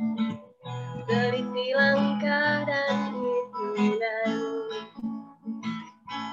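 A woman singing a poem set to music over a strummed acoustic guitar. The sung melody wavers through the middle, and the strumming carries on alone near the end.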